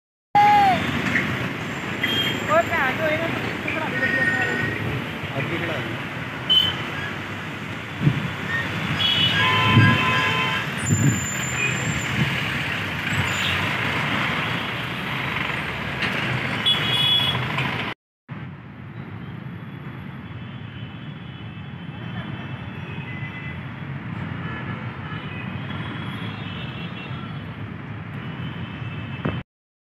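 Road traffic noise at a busy junction, with vehicles passing and horns sounding, busiest around the middle of the first stretch. About 18 s in it cuts abruptly to a quieter, steady traffic hum.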